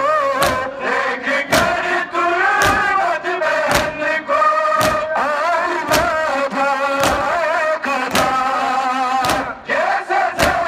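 A noha (Shia mourning lament) chanted by many men's voices, with the crowd's unison matam strikes of hands on bare chests about once a second, keeping the beat.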